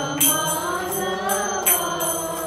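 Devotional mantra chanting sung as music, with sustained voices and bright metallic strokes ringing over it, the loudest shortly after the start and near the end.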